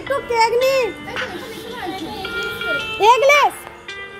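High, excited voices call out in long rising-and-falling shouts, once just after the start and again about three seconds in, over a tune of held electronic notes.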